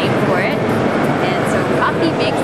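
Mostly speech: a woman talking, over background music and steady background noise.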